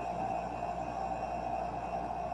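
Steady background noise with a constant hum and a single held tone, picked up by open microphones on a video call, with no one speaking.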